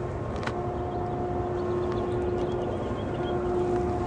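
A steady mechanical hum, one droning tone with its overtone, over a low rumbling background, with a single sharp click about half a second in.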